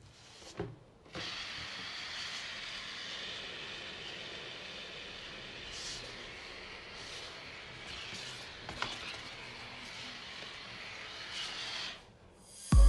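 Steady hiss of air escaping from a deflating balloon down through a plastic bottle's neck and out under a cardboard disc, a balloon hovercraft running. It starts about a second in, after a brief quiet gap, and there is a small knock about nine seconds in.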